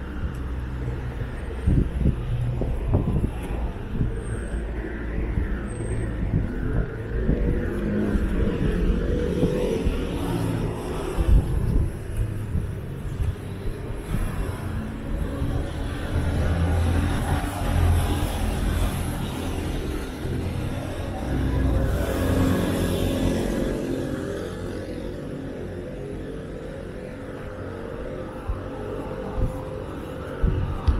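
Road traffic on a busy city avenue: cars and buses passing with a steady low rumble of engines and tyres, loudest in the middle stretch and easing off near the end.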